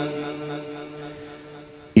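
The end of a man's chanted Quranic recitation: the held last note of a phrase fades away with a lingering echo, then the next sung phrase starts abruptly at the very end.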